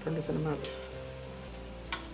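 Food frying and sizzling in a pan on a gas stove while it is stirred with a metal ladle, with a light click near the end.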